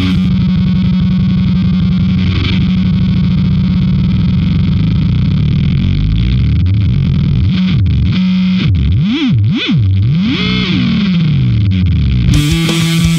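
Jazz bass played through a Fuzzrocious M.O.T.H. fuzz pedal: one distorted note is held for several seconds. Near the end, the tone swoops widely up and down in pitch several times as a knob on the pedal is turned.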